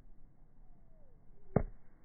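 Golf iron striking a ball off the turf on a short swing: one sharp click about one and a half seconds in.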